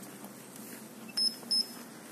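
Handheld paint thickness gauge beeping twice, short high beeps about a third of a second apart, a little past the middle. Each beep signals a paint-layer reading being taken on the car's panel.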